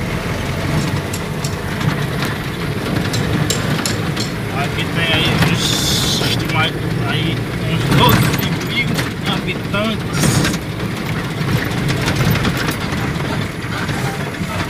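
Engine and road noise inside a moving vehicle: a steady low hum with scattered small rattles and clicks.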